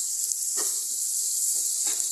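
Diced pork with onion, garlic and chili frying in an electric pan with a steady high sizzle, in the pork's own rendered fat rather than added cooking oil. A metal spoon scrapes through the pan twice as the mix is stirred.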